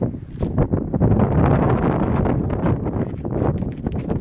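Wind buffeting the microphone outdoors, swelling into a stronger gust about a second in and easing near the end, with short knocks scattered through it.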